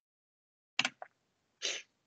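A man's short breathing noises into a headset microphone: a brief sharp burst with a small click about three quarters of a second in, and a quick hissy breath near the end, with dead silence between them.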